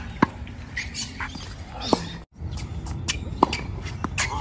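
Tennis balls struck by rackets in a rally: three sharp hits, roughly a second and a half apart.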